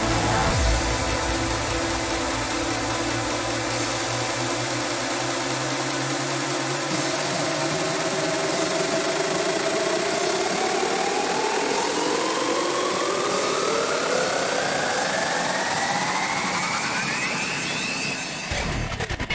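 Electronic dance music build-up in a hardstyle mix: the kick and bass drop out, leaving a steady wash of white noise. Synth tones then rise steadily in pitch through the second half, climbing toward the drop.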